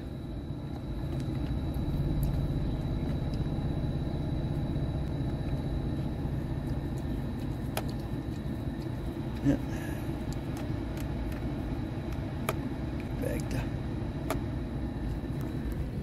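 Inside the cabin of a moving 2007 Dodge Nitro: steady engine and road rumble with the heater blower running. A few short clicks come as the climate control knob is turned through the vent selections.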